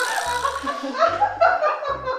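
A woman laughing in a run of short bursts.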